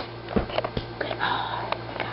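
Handling noise from a hand fumbling right at the camera: a few sharp knocks and clicks, with a short rustle or breath about halfway through.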